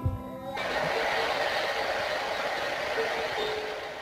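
A girl singing to her own guitar, cut off abruptly about half a second in, followed by a steady, even hiss-like rushing noise for the rest of the time.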